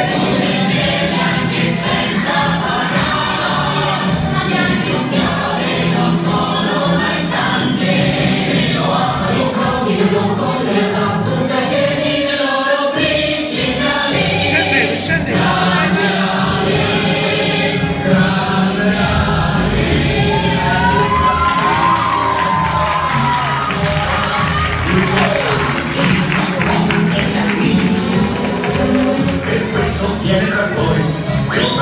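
Recorded musical number played loudly for a stage dance: a choir singing over a full backing track.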